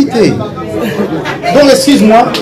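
A man speaking into a microphone in a large room.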